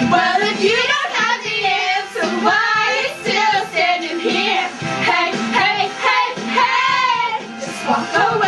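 Music with high voices singing along, the sung pitch sliding up and down over steady backing notes.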